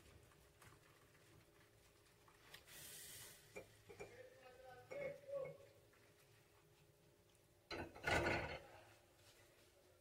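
Hot water poured in short, faint splashes into a baking tray around foil pans of cake batter, filling a water bath. The loudest pour comes near the end.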